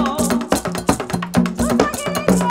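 Haitian Vodou drum music: a drum ensemble playing a steady rhythm with an iron ogan bell ringing over it, and voices singing in the second half.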